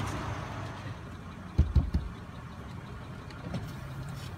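SUV engine idling with a steady low hum, and a couple of dull low thumps about one and a half seconds in.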